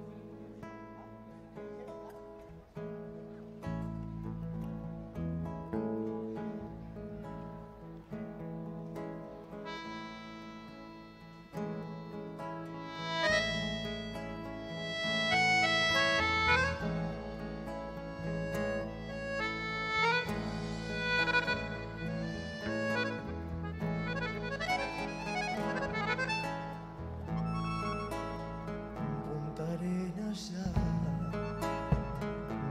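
Live band playing the instrumental introduction of a chamamé: accordion carrying the melody over acoustic guitar and bass guitar. The bass comes in after a few seconds, and the music grows fuller and louder about halfway through.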